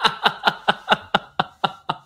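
Hearty laughter: a long run of rhythmic "ha" pulses, about four or five a second, growing fainter toward the end.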